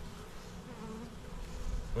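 Honeybees from a collected swarm buzzing around a nucleus box as they clamber in at the entrance: a low, steady hum.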